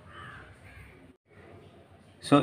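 A bird calling faintly in the background, a few short calls, over a low room hum; the sound cuts out completely for a moment a little past the middle.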